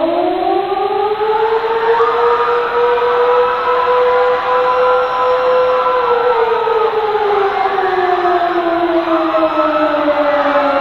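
Civil defense air-raid siren winding up at the start, holding a steady wail for about six seconds, then slowly falling in pitch, over a hiss of background noise. It is the warning wail that follows a nuclear attack announcement.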